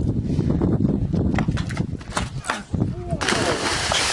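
Low rumbling noise with scattered clicks, then about three seconds in a sudden loud splash into water that goes on as rushing, churning water.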